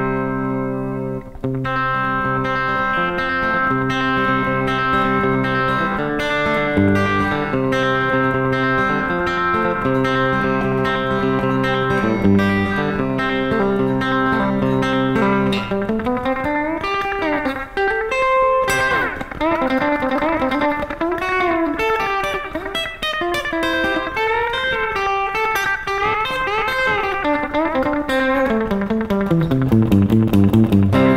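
Pink offset-body electric guitar played through an amp with slapback delay. For about fifteen seconds it plays picked chord patterns, each a bass note followed by a backwards roll, then switches to a single-note lead line with string bends and ends on a run down into the low strings.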